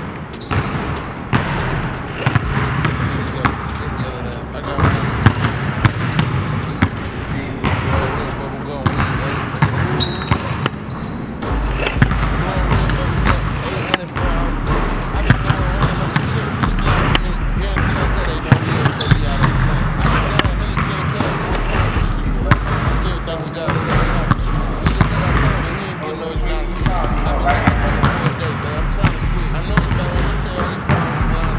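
Basketballs bouncing on a hardwood gym floor, sharp repeated thuds throughout as the balls are dribbled and passed. Background music runs under them, with a deep bass line coming in about a third of the way through.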